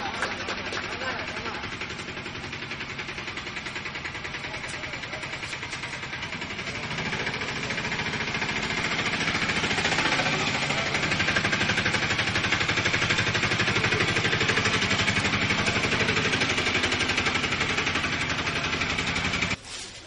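Audience applause: a dense, continuous clapping that swells about a third of the way in and cuts off suddenly just before the end.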